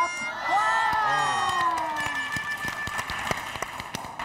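Several voices let out a long, falling groan of disappointment. It is followed by a run of scattered short claps or knocks.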